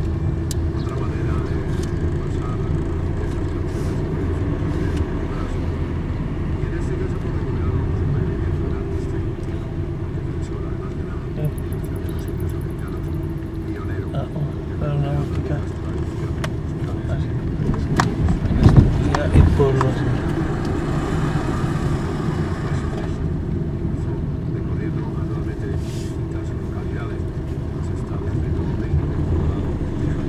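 Steady road and engine noise inside a moving car's cabin. A few louder thumps come a little past halfway through.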